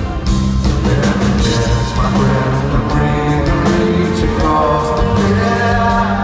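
A live rock band plays through an arena PA system: acoustic and electric guitars, drums with a steady cymbal pulse, and keyboards, with a male lead vocal singing over them. It is heard from within the crowd.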